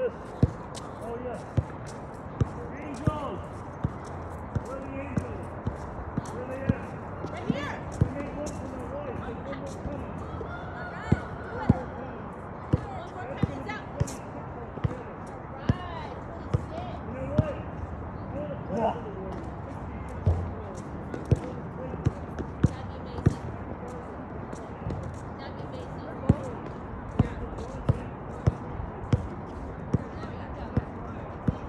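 Basketballs bouncing on an outdoor hard court: sharp, irregular thuds about one or two a second, with faint distant voices.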